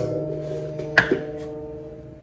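A two-note chime: two ringing tones struck about a second apart, each holding and then fading away.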